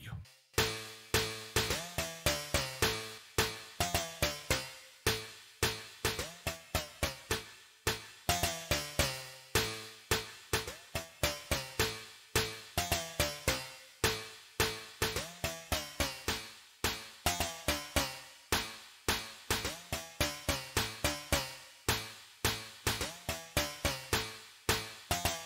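Synthesizer pluck sound playing a rhythmic pattern of short, quickly decaying notes, several a second, run through a de-reverberation plugin that is reducing its reverb tail.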